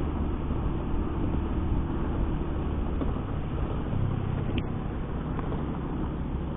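Honda Beat FI scooter's single-cylinder engine running at a steady cruise, mixed with steady wind and road rumble while riding on a dirt road.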